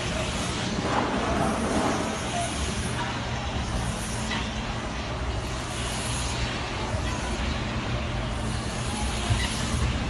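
Steady outdoor city background noise: a continuous low traffic rumble with hiss.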